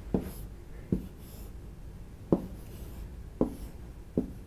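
A stylus writing on the glass of an interactive touchscreen whiteboard: four sharp taps as the pen touches down, roughly a second apart, with faint scratchy strokes between them.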